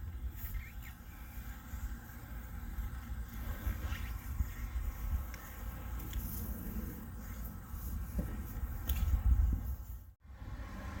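Rope being handled and pulled through a kayak's tie-down and carrier: faint irregular rustling and scraping. Under it is a low, uneven rumble of wind on the microphone.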